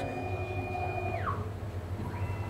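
Espresso Book Machine's binding mechanism running on its motor drives. A high, steady whine slides down in pitch and stops a little past halfway, over a low machine hum.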